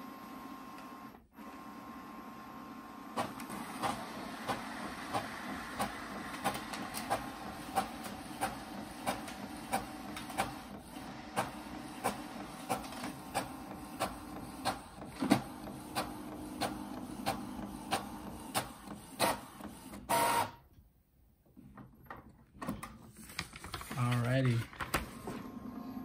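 Epson EcoTank ET-3850 inkjet all-in-one making a colour copy from its document feeder. The mechanism runs with a steady hum and a regular click about twice a second. Near the end there is a louder burst, then a pause of about two seconds before it starts again.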